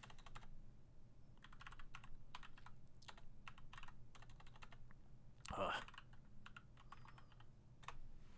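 Computer keyboard typing: runs of quick, faint key clicks in short bursts with pauses between them.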